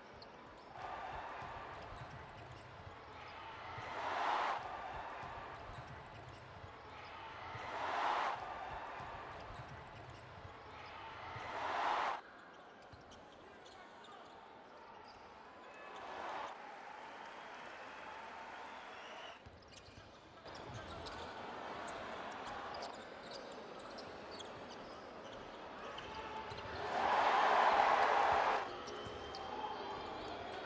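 Basketball arena game sound: ball bounces and court noise under a steady crowd hum. Crowd cheering swells about five times, each cut off sharply, the loudest near the end.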